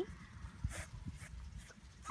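Faint rustling and a few soft clicks as a hand rubs a five-week-old Newfoundland puppy's fur, over a low rumble.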